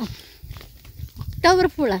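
Footsteps on a paved road, with one short, loud voice call near the end that rises and then falls in pitch.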